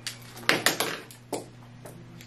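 A few light clicks and taps of plastic pens knocking together as a bundle of them is handled, about five scattered clicks.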